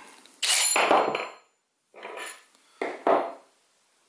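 Steel pocket-hole drill bits and tools handled on a wooden workbench while the small bit is swapped for the larger HD bit: a clattering rattle with a metallic ring about half a second in, then two shorter knocks around two and three seconds in.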